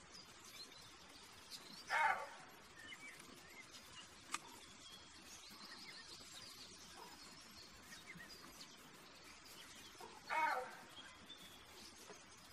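Roe buck barking: two short, hoarse calls about eight seconds apart. Faint bird chirps sound in the background.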